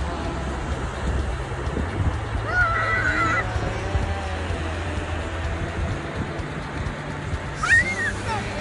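A young child's high-pitched, wavering squeal about two and a half seconds in, and a shorter rising-and-falling cry near the end, over a steady low rumble.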